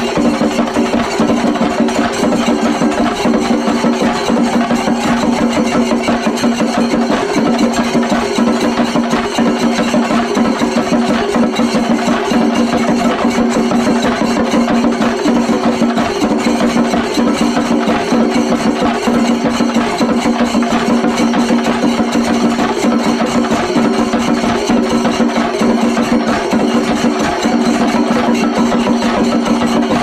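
Singari melam ensemble of many chenda drums beaten with sticks in a fast, dense, unbroken roll, with hand cymbals (ilathalam) keeping time; loud and steady throughout.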